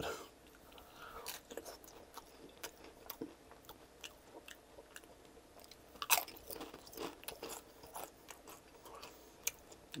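Close-miked chewing of slightly soggy chili cheese nacho chips: small wet mouth clicks and crunches, with a louder crunch about six seconds in as a chip is bitten.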